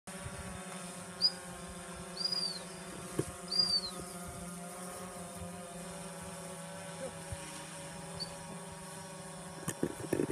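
Steady low hum of an engine running. A few short, high, arched chirps come about one to four seconds in, a faint one near eight seconds, and a couple of sharp clicks near the end.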